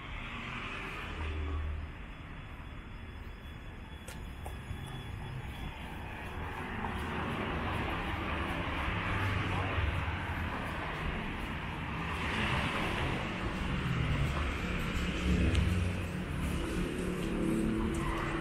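Street traffic: cars driving past on the road alongside, engine and tyre noise getting louder from about the middle on, with a few swells as vehicles go by.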